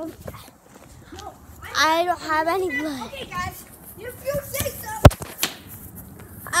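A child's high voice calling out with a wavering pitch, then a single sharp knock about five seconds in, the loudest sound, from the phone being bumped as it is handled against clothing.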